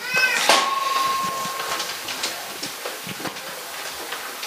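A short, high-pitched, wavering cry at the very start, followed about half a second in by a steady high tone that holds for about a second, over light room noise.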